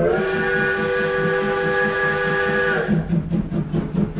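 A steam-train whistle, a chord of several steady tones held for about three seconds, sounds over a steady rhythmic pulse in a recorded song's instrumental intro.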